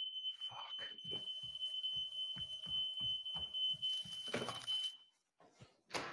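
Smoke alarm sounding one steady high-pitched tone that cuts off about five seconds in, set off by burnt pancakes. Quieter knocks sound beneath it.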